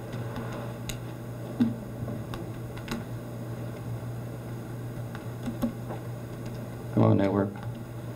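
Meeting-room sound with a steady low electrical hum and scattered light clicks and taps from a laptop being worked. A short burst of a person's voice about seven seconds in is the loudest thing.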